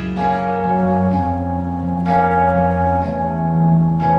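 Kurzweil stage piano playing slow, sustained chords in a bell-like tone, changing about once a second: the instrumental opening of a song, with no voice.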